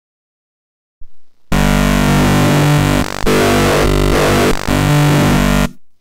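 Xfer Serum software synthesizer playing one held note from a wavetable made from an imported PNG logo image, the image's brightness mapped to the wave's amplitudes. The note starts about a second and a half in, keeps a steady pitch for about four seconds and changes tone a couple of times along the way.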